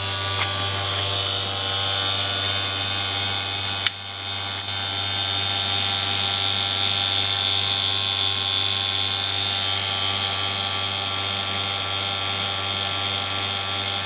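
Vacuum magnetron sputtering rig running with the plasma lit, giving a steady electrical hum and buzz that never lets up. A single sharp click about four seconds in.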